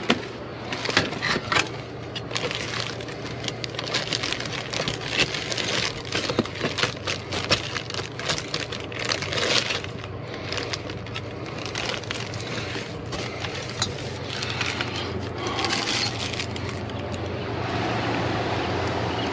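Plastic bags and wrappers crinkling and crackling as dumpster trash is rummaged through with gloved hands and a grabber tool, a constant stream of small clicks and rustles. A steady low hum runs underneath.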